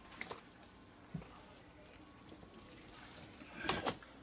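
Faint trickling and dripping of water as the portable mini washing machine drains and soaked clothes are handled, with a few soft knocks and a short, louder burst of handling noise near the end.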